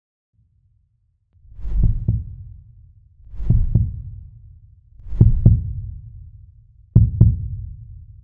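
Heartbeat-style sound effect in a logo sting: four double thumps, each a lub-dub pair of low beats, coming about every 1.7 seconds after a second or so of silence.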